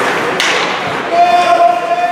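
Indoor ice hockey rink during play: a sharp crack from the action on the ice about half a second in, ringing briefly in the arena, then a voice holding one long shout from about a second in.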